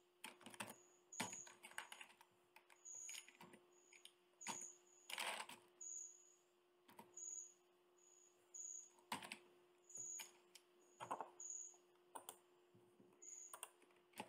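Faint typing on a computer keyboard: irregular keystrokes in short runs with pauses between them. A faint steady hum sits underneath.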